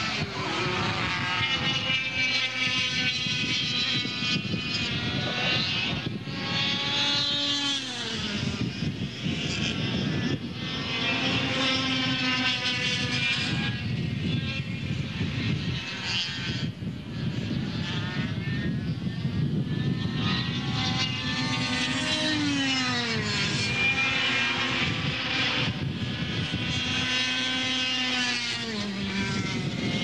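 Several air-cooled two-stroke kart engines running at high revs, overlapping one another. Their pitch climbs steadily, then drops sharply a few times as the karts slow for corners, and rises again as they accelerate away.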